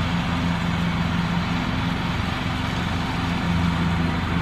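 Engine of a new 18.5-horsepower Craftsman riding lawn mower running steadily as it drives across a lawn mowing grass.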